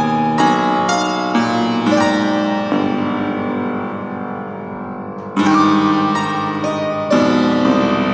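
Fortepiano playing a slow passage of struck chords and notes. About a third of the way in, one chord is left to fade for nearly three seconds before the playing starts again.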